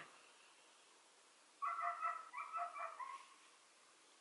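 A dog whining: a run of short, high, steady-pitched whines, faint, starting about a second and a half in.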